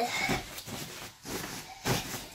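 Faint rustling and handling noise as a child moves onto a made bed, with one short thump near the end.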